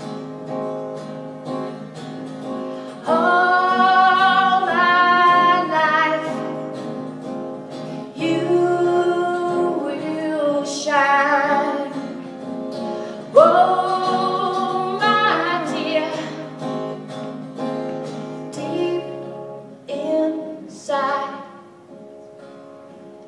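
A woman singing long held notes over an acoustic guitar, live through a small PA.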